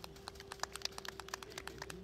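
Scattered hand-clapping from a small outdoor audience: irregular separate claps, several a second, over a steady faint hum.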